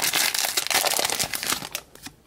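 A foil trading-card booster pack being torn open and crinkled by hand: a dense crackling that fades out just before the end.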